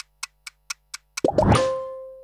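A clock-tick sound effect, about four sharp ticks a second. Just over a second in it stops and a sudden hit takes over, leaving a low ringing tone that slowly fades: a title-sequence sting.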